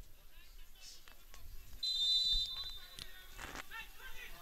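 Faint shouts of players on an open football pitch, with one short, steady whistle blast a little under two seconds in.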